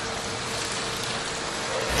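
Steady water hiss, like rain or running water at the fish stalls, with a faint steady hum underneath.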